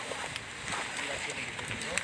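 Faint voices talking in the background over a steady hiss, with a few light clicks.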